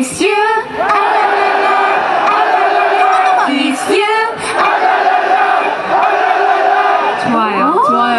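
Concert crowd chanting a fan chant together with the singers, on a count-in: two long held sung phrases of many voices, each about three seconds, with a short break between them.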